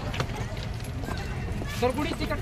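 Footsteps of people climbing marble steps, with short clopping strikes, among visitors' voices; a voice rises near the end.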